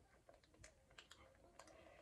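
Near silence broken by a few faint, scattered soft clicks: the mouth sounds of a child quietly biting and chewing a hotteok (Korean sweet pancake).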